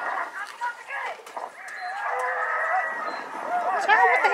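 People's voices hollering from a gas pump's built-in video screen, with one long drawn-out call about halfway through.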